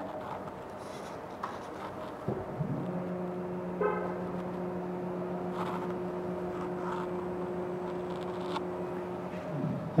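Atlas 1311 UV flatbed printer's carriage lift motor running during the automatic head-height detection, lowering the print carriage. A steady hum rises into pitch, holds for about seven seconds and falls away as the motor stops, with a brief chirp about four seconds in.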